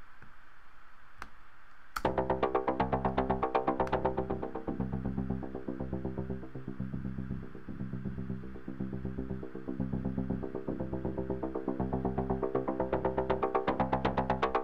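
A Native Instruments Reaktor Blocks modular synth patch plays a fast, evenly repeating step-sequenced synth line through a filter and delay, with a gritty, acid-like sound. It starts suddenly about two seconds in, after a few clicks, and grows brighter and louder near the end.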